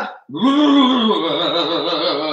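A man's long drawn-out wordless vocal sound, like a groan, lasting over two seconds: its pitch falls at first, then wavers up and down.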